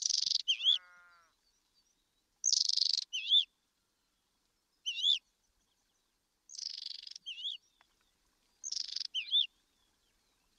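Bird song: a call repeated about every two seconds, each a short buzzy rasp followed by a quick wavering whistle. A lower, briefer call slides down in pitch just under a second in.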